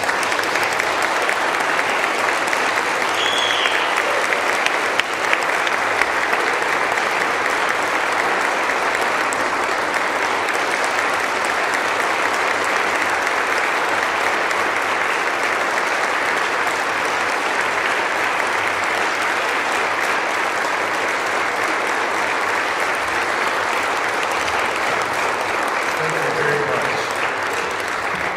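Audience applauding steadily for the full length, with a short whistle about three seconds in; the clapping eases off near the end.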